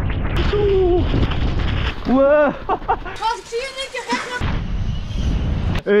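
Wind buffeting and rumble on an action camera's microphone during a fast mountain-bike run down a rough trail. A person yells twice in the middle.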